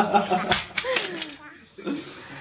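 A voice trailing off, then a quick cluster of small sharp clicks about half a second in, with a short gliding vocal sound and one more click near the end.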